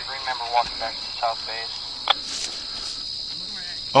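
Crickets chirping in a steady, high, even tone, with faint voices in the first second and a half and one sharp click about two seconds in.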